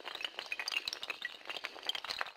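Shattering-glass sound effect: a dense, continuous stream of small glassy clinks and tinkles.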